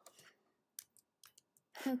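A few light clicks of a computer mouse, the sharpest a little under a second in.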